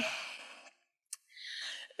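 A lecturer's breath on a microphone: a breathy tail fading out after her last word, a single faint click about a second in, then a short breath in just before she speaks again.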